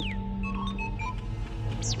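R2-D2 astromech droid beeping and whistling: a rising-and-falling whistle at the start, a run of short beeps at changing pitches, then quick upward sweeps near the end. Background film music with a low pulsing drone plays throughout.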